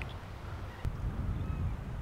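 Wind buffeting the camera microphone, a steady low rumble, with a single faint click about a second in.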